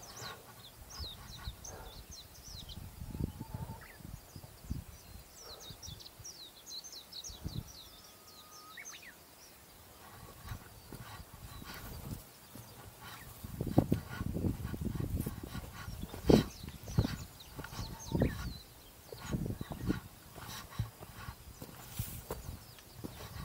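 Birds chirping in quick runs of short high notes, with one whistled note about eight seconds in. From a little past the middle, a hiker's footsteps on the trail and irregular low thumps on the microphone take over as the loudest sound.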